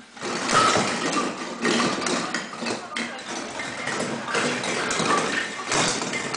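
A pile of Christmas baubles rattling and clinking against one another and against the cardboard box as a child moves among them: a dense, continuous clatter made of many small clicks.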